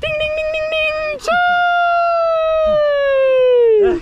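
A person's long, high held yell in two parts, the second sliding steadily down in pitch, as the final round ends. A sharp smack sounds between the two parts.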